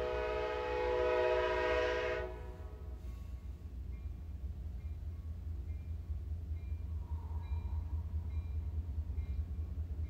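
Train horn sounding a held chord of several tones, which cuts off about two seconds in, leaving the low rumble of the passing train.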